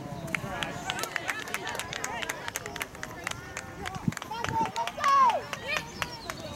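Voices of players and sideline spectators calling out across a soccer pitch, with one loud shout that falls in pitch about five seconds in. Scattered sharp clicks are heard throughout.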